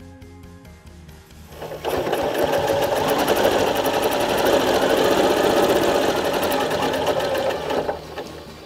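Janome Continental M8 sewing machine stitching at speed as the quilt is guided by hand along a ruler, its stitch speed governed by the Accurate Stitch Regulator. The machine starts about two seconds in, runs steadily with a fast needle rattle, and stops just before the end.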